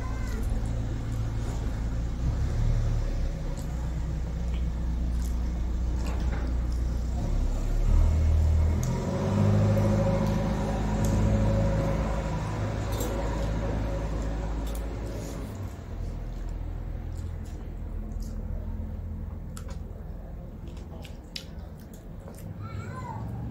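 Hand-eating from metal plates: fingers mixing rice and curry, with small clicks and chewing sounds, over a low rumble that swells for a few seconds about halfway through.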